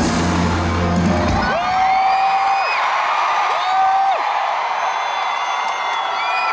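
A K-pop song's loud backing track ends about a second and a half in, and an arena crowd cheers, with long high-pitched screams from fans rising over it.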